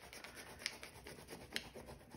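White wax candle rubbed back and forth over printer paper laid on a dried leaf: a soft, scratchy rubbing, with a couple of light ticks.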